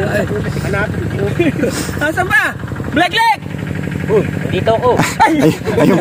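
Several people talking among themselves in indistinct, overlapping voices over a steady low hum.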